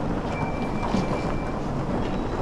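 Suitcase wheels rolling over a polished stone floor, a steady rolling noise, with a thin high steady tone lasting about a second near the start.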